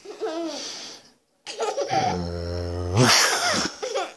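A little girl laughing in short high bursts, broken by a drawn-out, low-voiced 'čau' about halfway through, then more laughter.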